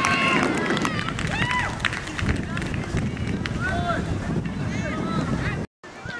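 Voices shouting and calling out across a youth football pitch during play, many short calls overlapping, with wind rumbling on the microphone and a few sharp knocks. The sound cuts out abruptly for a moment near the end.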